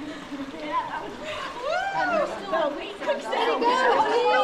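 A group of people talking over one another in lively, overlapping chatter.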